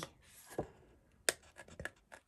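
Small craft scissors snipping through thin card, cutting out a stamped image: a few short, sharp snips, the sharpest just over a second in and a quick cluster near the end.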